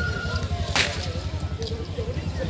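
A single sharp whip crack about a second in, cutting through the crowd's low rumble, as a held note of the dance music fades out.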